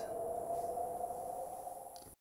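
A steady, ringing electronic tone, an edited-in sound effect, slowly fading out over about two seconds and then cutting off.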